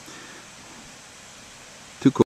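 Steady, faint hiss of background noise, even throughout, with no distinct event in it.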